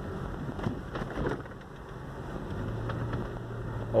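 Range Rover's engine running as it drives, heard inside the cabin as a steady low rumble over road noise. The hum becomes steadier and more even about halfway through.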